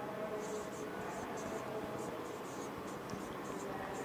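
Felt-tip marker writing on a whiteboard: a string of short, irregular scratching strokes as words are written out.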